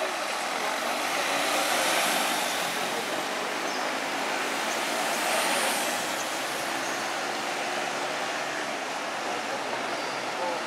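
Road traffic going by, over a steady rushing noise. The sound swells twice, about two seconds in and again about five and a half seconds in, as vehicles pass.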